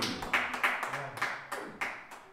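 Hand claps: about eight sharp claps at an uneven pace over two seconds.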